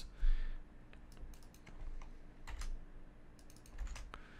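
Typing on a computer keyboard: scattered keystrokes in short runs, with a faint steady hum underneath.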